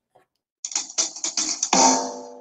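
A recorded backing track for the song starts: a quick run of sharp percussive hits, then a sustained keyboard chord near the end.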